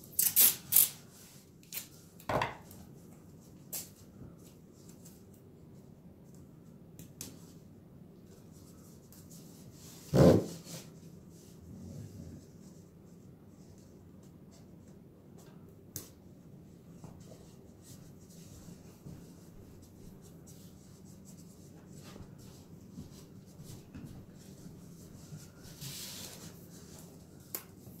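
Handling of MDF roof panels and masking tape: a few short scrapes and knocks, the loudest about ten seconds in, over a faint steady room hum.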